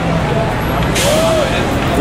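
Steady city street traffic rumble with a brief, sharp hiss about a second in, and voices in the background.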